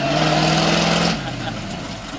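Lifted pickup truck's engine running at a steady pitch as the truck drives past close by. A little past halfway the engine note drops lower and quieter as the throttle eases off.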